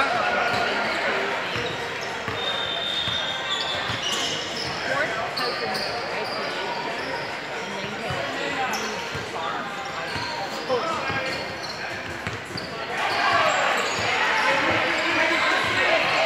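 Sounds of a basketball game in a large gym: a basketball bouncing on the hardwood floor amid players' and spectators' voices, echoing in the hall. The voices grow louder near the end.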